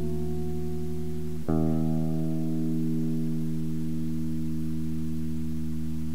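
Music: a slow passage of sustained, ringing guitar chords over a held low bass note, with a new chord struck about a second and a half in and left to ring out.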